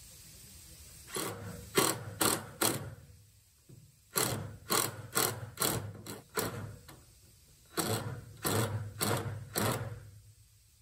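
DeWalt cordless driver run in short trigger bursts, driving screws into a redwood 2x4 frame: three runs of quick pulses, about four, then six, then four or five.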